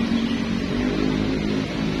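Steady low hum of motor traffic from a nearby road, an engine drone that fades near the end.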